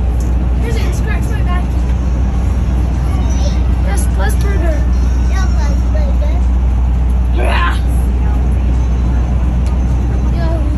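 Steady low road and engine rumble inside the cabin of a Forest River Sunseeker Class C motorhome under way, with children's voices and chatter over it and one louder cry about seven and a half seconds in.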